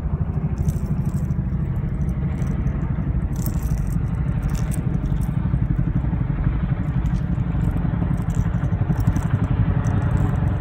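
Wind buffeting the microphone: a steady, flickering low rumble, with a few faint ticks and rattles over it.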